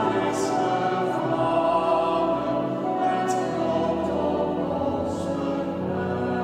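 Small mixed choir of women's and men's voices singing a hymn together in harmony, with sung words.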